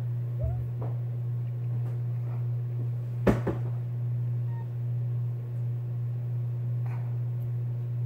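A steady low hum, with a few faint clicks and one sharp knock about three seconds in from handling as in-ear earbuds are pushed into the ears.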